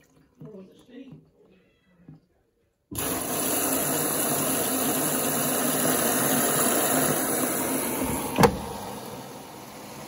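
Mains water rushing into a Bosch WFO2467GB washing machine through its detergent drawer as the fill starts at the beginning of a cotton 60 cycle: a loud, steady hiss that starts suddenly about three seconds in. A sharp click comes near the end, after which the flow sounds quieter.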